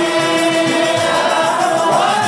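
Male voices singing a qasida together in maqam Siqa, holding one long note that then rises near the end.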